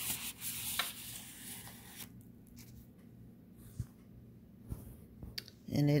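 Rustling of a clear plastic bead bag and a paper card being handled and laid down on a wooden board for about two seconds, then a few light taps.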